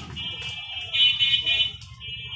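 A steady, high-pitched buzzing tone like an electronic buzzer, loudest about halfway through. Clicks from the steel-mesh rack's metal doors being handled come with it.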